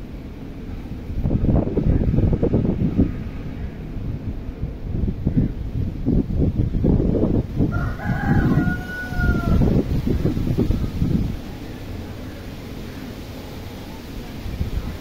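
A rooster crows once, a held call about eight seconds in. Loud, low, gusty rumbling noise, like wind buffeting the microphone, runs under it from about one second in until about eleven seconds.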